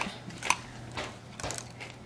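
A serving spoon knocking lightly against clear bowls of poke on a tray: three small clicks about half a second apart, over a low steady hum.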